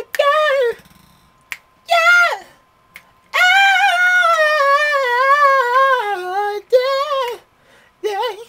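A man singing high vocal runs: two short phrases, then a long run of about three seconds that slides and steps downward in pitch, and a last short phrase. He is stretching his vocal range for high notes. There is a single sharp click between the early phrases.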